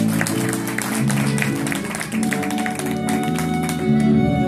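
Small live band playing a slow jazz standard: bass guitar and strummed guitars carry the tune with many sharp strokes. A violin comes back in near the end.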